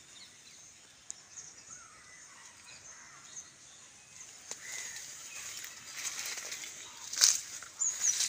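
Quiet rural outdoor ambience with faint scattered bird chirps over a steady high hiss, and a short burst of noise about seven seconds in.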